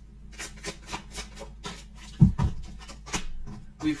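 A deck of tarot cards being handled and shuffled, a quick run of short papery card clicks, with a low thump a little over two seconds in.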